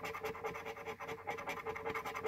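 A large metal coin scraping the latex coating off a paper scratch-off lottery ticket in rapid back-and-forth strokes, with a steady hum underneath.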